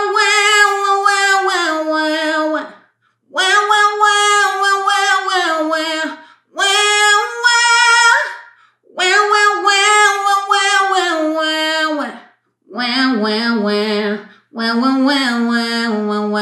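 A woman sings the chorus melody on a nasal "wah wah wah" in place of the words: a pharyngeal mix-voice exercise, the bright nasal "ugly cry" placement used to find a contemporary mix voice without pushing chest voice. She sings six phrases of two to three seconds each with short breaths between them, and the last two sit lower in pitch.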